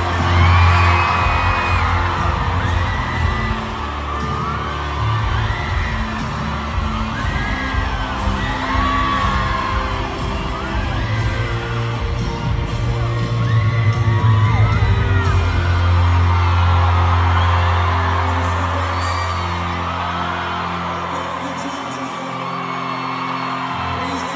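Live pop band playing an instrumental passage with a heavy bass line in an arena, heard loud and close through a phone, with fans screaming and whooping over it. The bass dies away near the end and the music grows quieter.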